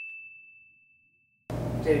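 The tail of a single high, pure ding, fading away over about the first second, then a brief dead silence. Room noise and a man's voice come back in near the end.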